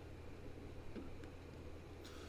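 Quiet room tone with a steady low hum and a few faint, short clicks.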